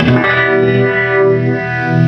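Electric guitar played through a fuzz pedal and a Gypsy-Vibe (Uni-Vibe-style) pedal. A distorted chord is struck at the start and left to ring, its level swelling and dipping as it sustains.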